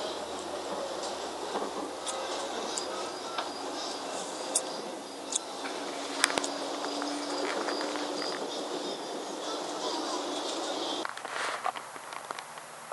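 A recording of a Green Line trolley ride played back through a Sony handheld voice recorder's small speaker: a steady hiss of travel noise with faint voices and a few sharp clicks. It cuts off about eleven seconds in.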